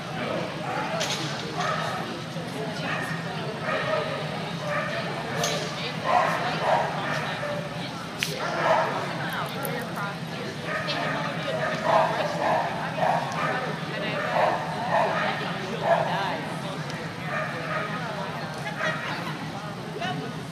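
A dog barking repeatedly in short barks, every second or two, over a steady low hum and background voices.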